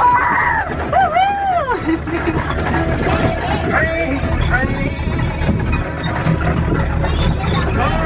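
Steady low rumble of a small farm ride train in motion, with a child's high, sing-song voice over it, loudest in the first two seconds.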